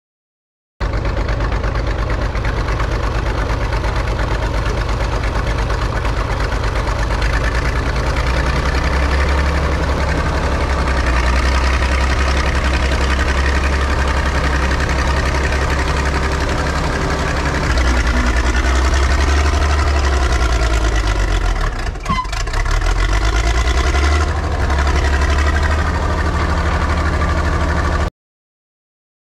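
Caterpillar D6 9U crawler dozer's six-cylinder diesel engine running with a deep, loud rumble as the machine works. Near the end the sound dips briefly, then picks up again.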